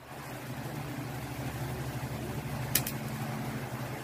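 Electric stand fan running steadily: a low motor hum under the rush of air from the blades, with one short click about three quarters of the way through.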